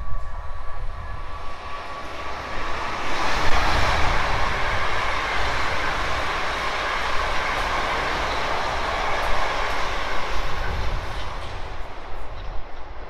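A South Western Railway third-rail electric multiple unit passing through the station, steel wheels running on the rails. A thin steady whine comes first. The rail noise swells about three seconds in, holds, and eases off near the end as the train draws away.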